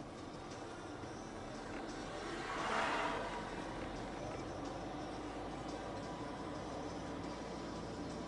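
Steady road and engine noise inside a slowly moving car, with an oncoming van passing close by about three seconds in as a brief swell of noise.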